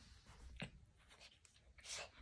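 Faint rustling and scuffing of a small dog's fur and paws against a rug as it twists and rolls on its back, with one short soft knock about half a second in and a brief louder rustle near the end.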